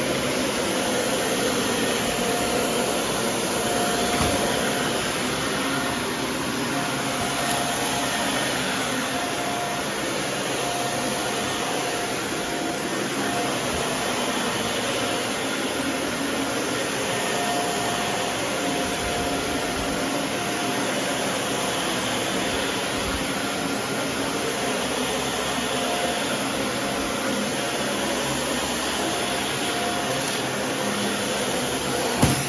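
Dyson ball upright vacuum cleaner running steadily while pushed over carpet, with a faint whine that comes and goes.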